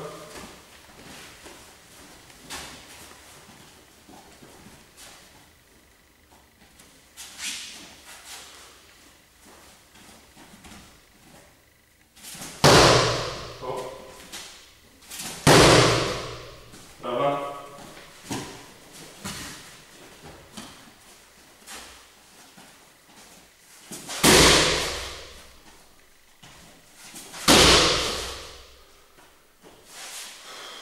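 Roundhouse kicks landing on a handheld kick shield: four loud slaps against the pad, in two pairs about three seconds apart, each with a short echo in the hall.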